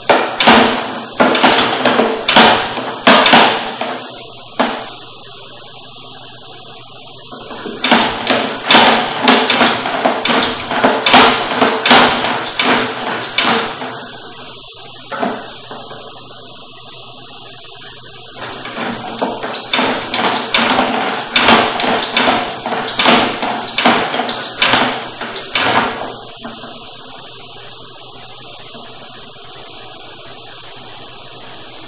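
Sewer inspection camera's push cable being fed down a drain line in three bursts of rapid knocking and rattling, with pauses of a few seconds between pushes. A faint steady hum runs underneath.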